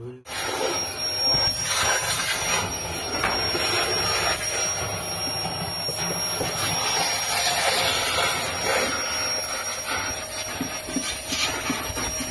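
A cleaning machine's motor running steadily, a loud hiss with a high, steady whine, as the car's dusty interior is cleaned. It starts suddenly just after the beginning.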